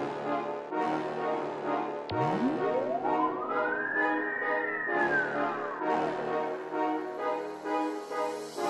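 Backing music with a regular beat. Over it, a gliding tone rises for about two seconds and then falls back.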